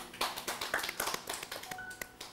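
A rapid, irregular run of sharp taps or clicks, with a brief two-note tone near the end.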